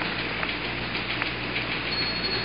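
Steady hiss of radio static with a low hum underneath, from a narrow-band Apollo-era air-to-ground radio link between voice transmissions; two faint clicks about half a second and a second in.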